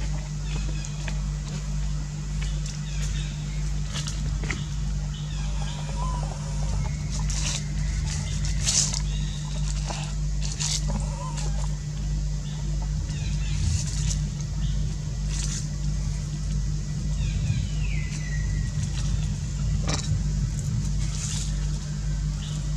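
A steady low mechanical hum, like an engine idling nearby, with scattered light clicks and faint distant voices over it.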